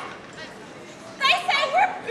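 Crowd murmur, then a few short, high-pitched shouts and calls from several voices starting about a second in.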